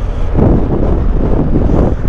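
Wind buffeting the microphone on a moving motorcycle, a BMW R1200GS Adventure. Its engine and road noise run underneath.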